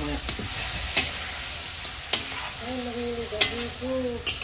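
Chicken pieces sizzling in a metal wok over a wood fire while a metal spatula stirs them, being sautéed until their liquid cooks off. The spatula clanks sharply against the wok four times.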